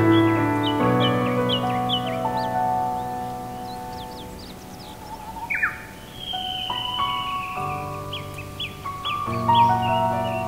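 Solo piano playing a slow, gentle piece over a forest birdsong background. A bird repeats short falling chirps throughout. A louder, harsher falling call comes about five and a half seconds in, then a long falling whistle, while the piano thins out before picking up again with low notes near the end.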